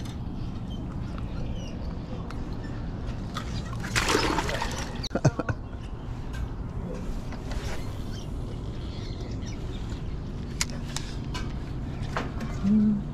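A brief splash of water about four seconds in, as a fish is dropped into a bucket, followed by a few sharp clicks of fishing tackle, over a steady low background rumble.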